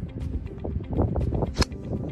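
A golf club striking a teed ball: one sharp, crisp crack about one and a half seconds in, over faint background music.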